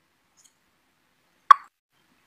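Near silence broken once, about one and a half seconds in, by a single short, sharp pop.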